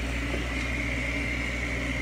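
Thunder Laser engraver running during an engraving job: a steady machine hum with a thin, steady high tone over it.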